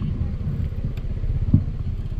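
Motorcycle engine idling, a steady rapid low pulse, with a brief louder knock about one and a half seconds in.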